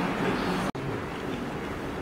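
Steady background noise with faint, indistinct voices, broken about two-thirds of a second in by a sudden, very short dropout where the recording is cut; after it, steady outdoor noise.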